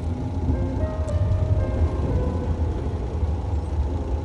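Street traffic noise: a steady low rumble of road vehicles that starts suddenly, with music still faintly playing over it.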